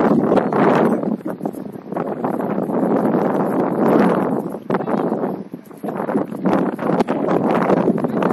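Wind buffeting an outdoor camera microphone: loud rumbling noise that swells and dips in uneven gusts, with a few faint clicks.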